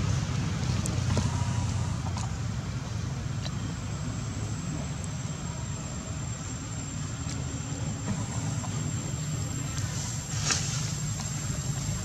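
Steady low rumble of outdoor background noise, with a thin continuous high-pitched tone and a few faint clicks near the end.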